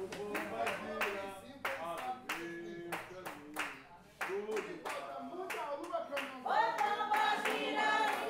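Hands clapping in a steady rhythm, about three claps a second, under a voice singing a traditional Jurema ponto, recorded live at a terreiro ritual. About six and a half seconds in, louder group singing joins.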